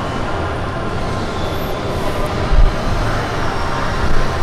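Steady background noise of a large exhibition hall, with a low thump about two and a half seconds in.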